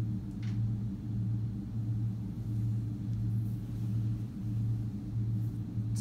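A steady low hum of the lecture room, unchanged throughout, with one faint short click about half a second in.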